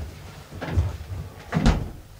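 A knock about a third of the way in, then a louder thump near the end as a bottle is taken out of a refrigerator and the refrigerator door is shut.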